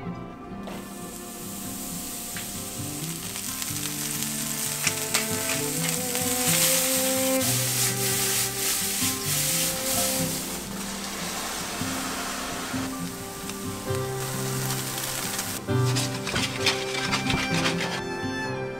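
Beech mushrooms sizzling and frying in olive oil in a stainless steel frying pan, with scattered crackles and spatters as they are stirred. The sizzle starts about a second in, is loudest in the middle and thins out near the end.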